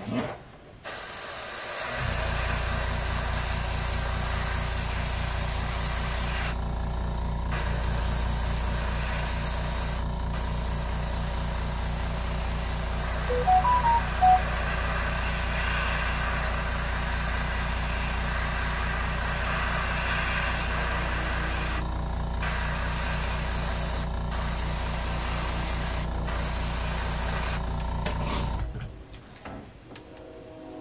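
Airbrush spraying paint in long bursts, the hiss breaking off briefly each time the trigger is let go, over the steady pulsing hum of an air compressor that starts about two seconds in and cuts off near the end. A few short high blips sound about halfway through.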